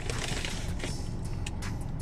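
Paper fast-food bag and sauce cup rustling and crinkling as they are handled, with small crackles and clicks throughout; the rustling is fullest in the first second.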